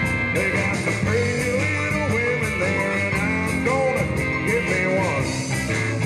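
Live blues band playing an instrumental break: an electric guitar solo with bent notes over drums, bass and keyboard, with cymbals keeping a steady beat.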